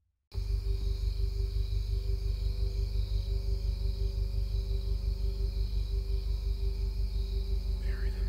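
Eerie ambient score: a low, pulsing bass drone with sustained high tones held above it. It cuts in suddenly out of silence just after the start.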